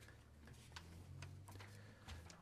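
Near silence: room tone with a faint steady low hum and a few soft, scattered clicks.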